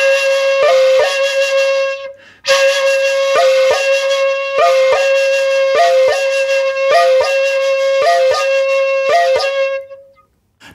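Shakuhachi playing the koro koro two-change exercise: a held note broken by pairs of quick upward flicks to the in-between note and back, about one pair a second, with a sharp tap at each change. There is a short phrase, a breath gap about two seconds in, then a long phrase.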